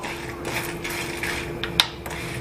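Kitchen utensils being handled, with light scraping and rubbing and one sharp click near the end, under a faint steady hum.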